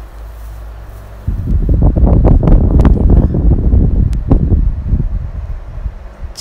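Loud, irregular low buffeting noise on the microphone, starting about a second in and easing off near the end, over a quieter steady low hum.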